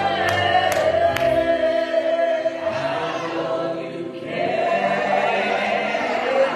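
Small gospel vocal group singing long held notes with keyboard accompaniment. Sharp beats about two a second sound through the first second or so, then stop.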